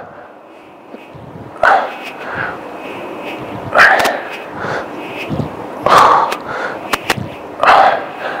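A man breathing hard from exertion, with a forceful breath out about every two seconds, four in all, and a few sharp clicks about seven seconds in.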